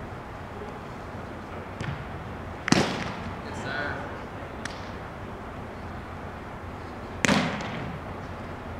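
Two sharp, loud smacks of a Spikeball being struck during a rally, about four and a half seconds apart, each ringing briefly in a large echoing indoor hall, with a few fainter taps between.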